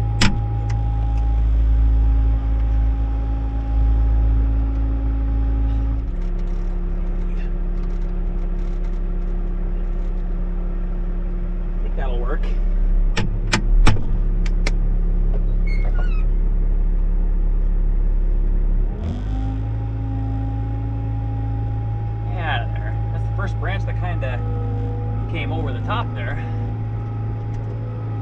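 Diesel engine of a Bobcat T66 compact track loader running under hydraulic load, heard inside the cab, while it is worked to free it from tangled tree branches. The engine note drops to a lower pitch about six seconds in and picks back up about nineteen seconds in. A quick run of sharp cracks comes in the middle, the loudest about fourteen seconds in.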